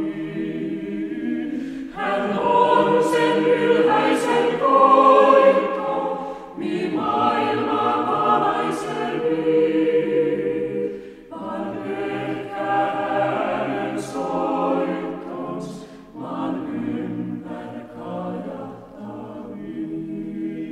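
Chamber choir singing a Finnish Christmas song in phrases of about four to five seconds, with short breaks between them; loudest in the phrase a few seconds in.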